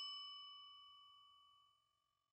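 Ringing tail of a single bell-like ding sound effect: a clear tone with bright overtones fading out over about a second.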